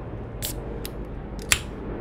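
A few short sharp clicks and taps as a beer can is handled, the loudest about a second and a half in.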